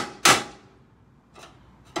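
Ball-peen hammer striking a pry bar held against a car's steel engine-mount bracket, knocking the OEM bracket loose from the body: two loud metallic blows in quick succession at the start, then a light tap and a sharp click near the end.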